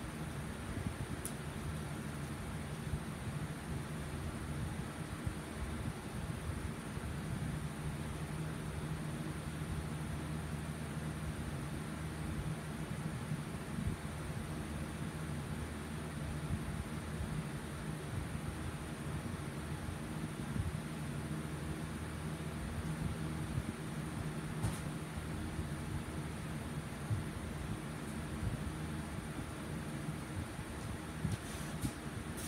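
Room tone: a steady low hum with an even hiss, like a small motor or fan running, with a few faint ticks.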